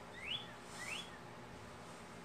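Two short, high, whistle-like chirps, each rising quickly in pitch, about half a second apart; they stop about a second in.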